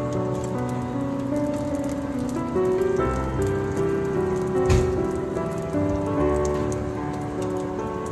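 Pork-and-cartilage sausages (dồi sụn) sizzling in oil in a frying pan, a steady crackle, over background music of slow held notes. There is one sharp knock a little past halfway.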